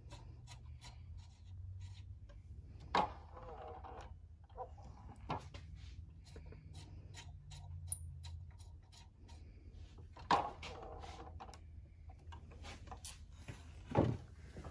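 Faint clicks, taps and rubbing from hands working the depth-stop mechanism of a DeWalt sliding miter saw, with a few louder knocks, over a low steady hum.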